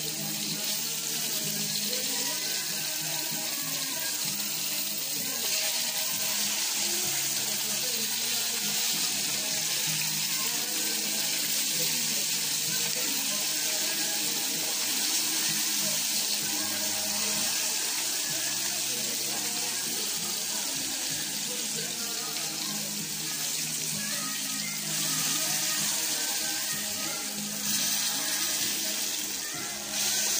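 Maasbanker (horse mackerel) frying in hot oil in a pan: a steady sizzle.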